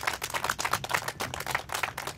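A crowd applauding: many hands clapping in a dense, steady patter.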